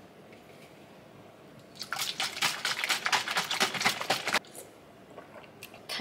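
Open aluminium can of watermelon water shaken with a hand cupped over its opening: the liquid sloshes in quick rapid strokes for about two and a half seconds, starting about two seconds in.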